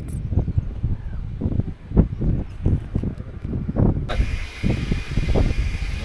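Wind buffeting the microphone in irregular gusts, a low rumble. About four seconds in the sound cuts abruptly to a steady hiss with scattered low knocks.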